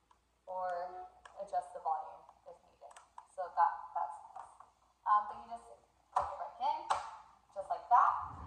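A woman talking, with a few sharp plastic clicks as a baby walker's toy steering wheel is handled and fitted back onto the walker tray.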